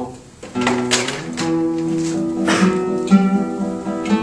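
Classical guitar played with plucked notes and held chords, starting about half a second in.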